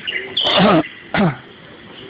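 Two short vocal sounds from a person, each falling in pitch, the first about half a second in and the second just after a second in, over birds chirping in the background.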